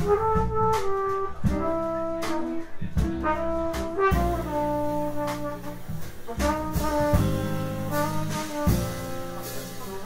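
Live jazz quartet: trumpet playing a melody of held notes that change every half second to a second, over piano, upright bass and a drum kit with cymbal strokes.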